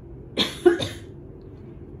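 A person coughing twice in quick succession about half a second in, the second cough louder.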